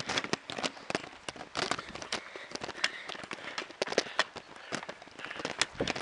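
Rapid, irregular clicks, knocks and rustling from a handheld camera being jostled against the microphone while riding a bicycle uphill.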